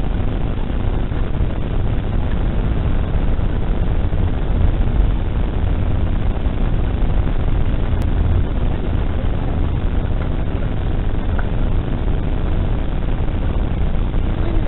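Steady road and engine noise of a car being driven, heard from inside through a dashcam microphone, with a strong low rumble and no sharp events.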